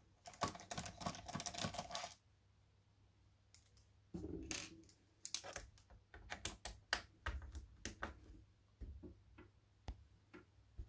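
Precision screwdriver and fingers clicking and tapping against screws and the plastic underside of a ThinkPad T61 laptop while the base screws are undone. There is a quick rattle of clicks at the start, a pause, then irregular single clicks and taps.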